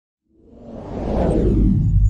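A rising whoosh that swells from silence to full loudness over about a second and a half, deep and rumbling at the bottom.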